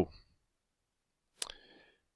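A single sharp computer-mouse click about one and a half seconds in, in an otherwise quiet pause.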